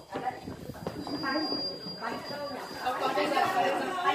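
Several voices talking over one another in lively, unclear chatter.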